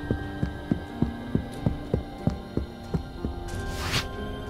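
Quick running footsteps, about three even thumps a second, over a low steady droning music bed. A short whoosh comes just before the end.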